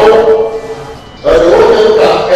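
A man speaking loudly in Ewe, with drawn-out, chant-like vowels and a short pause about a second in.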